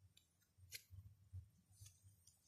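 Near silence with a few faint, sharp clicks of tarot cards being handled and set down.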